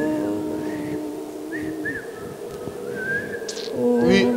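A single long held musical note with overtones, fading out about two seconds in, followed by a few faint short sounds.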